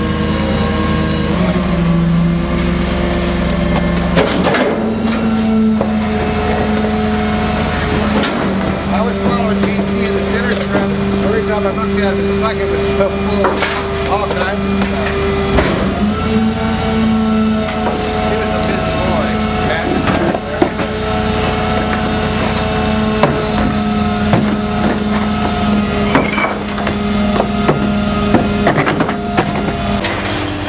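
Gasoline-powered GMC C7500 rear-loader garbage truck running its Pak-Mor hydraulic packer through a compaction cycle: a steady engine and hydraulic drone that shifts pitch several times as the blade sweeps and packs. Scattered clanks and crunches of trash being compacted run over it, and near the end a trash can is banged against the hopper as it is emptied.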